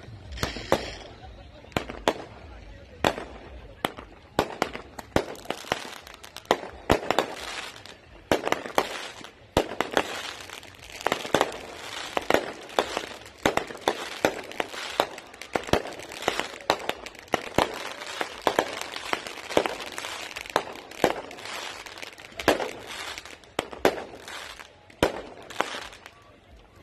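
Fireworks and firecrackers going off: an irregular run of sharp bangs and pops, often several a second, with no let-up.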